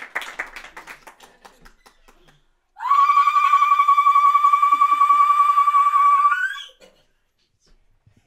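Hand claps from a group trailing off, then a woman's loud, high ululation (zaghrouta) held for about four seconds, rippling rapidly on one pitch and flicking upward just before it stops.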